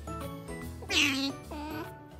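A domestic cat meows once, loudly, about a second in.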